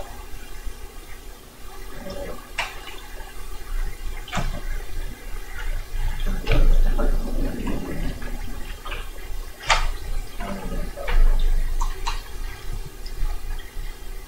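Handling noise from a small handheld microphone and its cord on a reel-to-reel tape recorder: scattered sharp clicks and knocks over rustling and a low rumble that grows louder in the middle.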